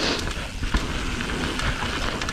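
Mountain bike rolling fast down dirt singletrack: a steady rumble of knobby tyres on the dirt, with a few short knocks and rattles from the bike over bumps.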